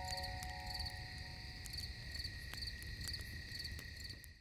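Crickets chirping at night, short chirps repeating two to three times a second over a steady high insect trill.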